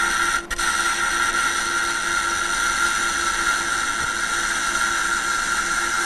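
Simulated semi-automatic (MIG) welding sound from a virtual-reality welding trainer: a steady hiss with a constant high tone, breaking off briefly about half a second in.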